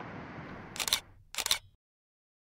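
Two camera-shutter clicks, sharp and bright, about half a second apart, over low background noise, after which the sound cuts off to dead silence.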